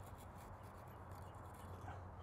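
A knife blade faintly scraping and flaking hard-water mineral scale off the flue pipe of a cut-open gas water heater tank.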